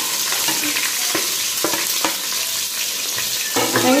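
Sliced onions sizzling steadily in hot oil in an aluminium pressure cooker pot, with a few light knocks between about one and two seconds in.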